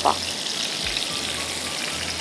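Chicken drumsticks sizzling steadily as they brown in butter in a frying pan.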